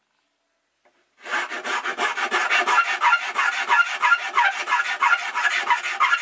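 Flat hand file rasping back and forth on the cut edge of a fiberglass enclosure, in quick repeated strokes of about three to four a second, starting about a second in. This is the final hand-finishing of a heat-sink opening to a tight fit.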